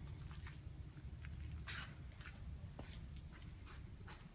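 Faint footsteps and scuffs on a concrete floor over a low steady hum, with one sharper scuff a little under two seconds in.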